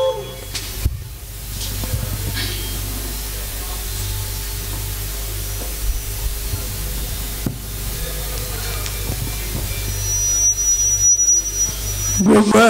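Steady hum and hiss from a live stage PA system during a break in the music, with faint scattered small sounds. Near the end a thin, steady high whistle sounds for about two seconds.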